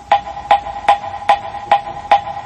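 Moktak (Korean Buddhist wooden fish) struck in a steady, even beat of about two and a half knocks a second, with a ringing tone held under the strokes, keeping time for sutra chanting.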